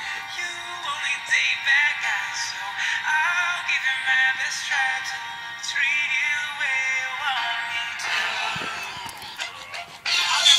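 Recorded pop song with heavily processed, gliding vocals, played back from a device and picked up thin, with no bass. About eight seconds in the melody drops out into a noisier, busier passage.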